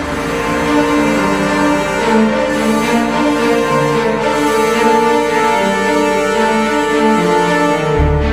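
Orchestral music: a fanfare-style passage of sustained, slowly shifting chords built on suspended chords.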